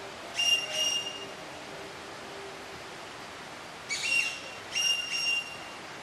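A bird's clear whistled notes, all at about the same pitch: two short notes about half a second in, then a phrase of three or four about four seconds in.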